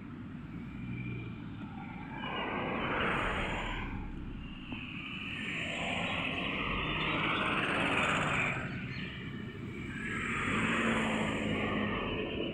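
Road traffic: vehicles passing one after another, giving three swells of tyre and engine noise that rise and fade, over a steady low rumble.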